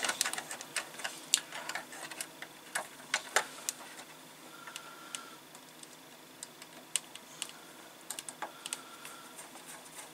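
A small screw being driven into plastic model parts with a hand screwdriver: scattered light clicks and ticks of metal on plastic, busier in the first few seconds, with two faint brief squeaks. The screw goes in on the first try.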